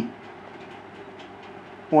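Steady low background hum in a pause between phrases of a man's speech: the speech trails off just after the start and resumes near the end.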